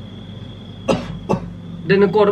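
Two short coughs about half a second apart, followed by a man starting to speak.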